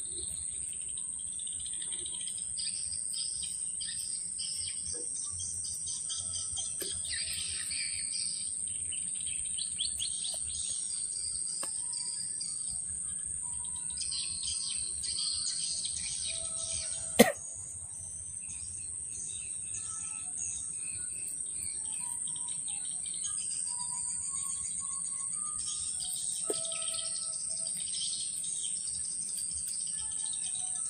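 Birds chirping and calling over a steady high insect drone in swamp forest, with one sharp click about seventeen seconds in.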